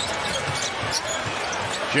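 A basketball being dribbled on a hardwood court under the steady noise of a large arena crowd.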